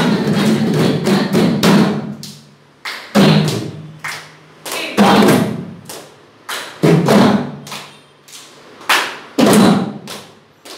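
Students playing music, led by a drum: dense playing over a steady low tone for about two seconds, then loud single drum strokes roughly every one to two seconds, each ringing briefly at a low pitch before it dies away.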